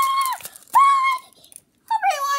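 A child's high-pitched held squeal, level in pitch and tailing off, followed about a second in by a shorter squeal.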